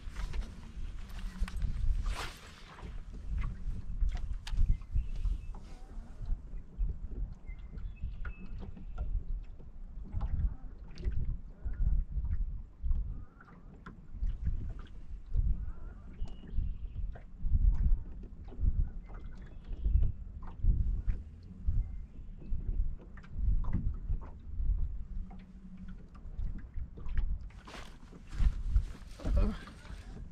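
Wind buffeting the microphone in uneven gusts, a low rumble that swells and fades, with scattered small clicks and knocks.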